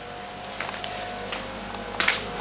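Air cooler running: a steady, even fan noise with a faint steady tone in it, and a couple of faint ticks.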